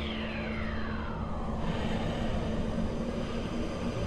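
A falling whoosh over a steady low rumble, a sound effect in an electronic music intro. The pitch drops over about the first second and a half, then the rumble carries on under a held low note until the beat returns.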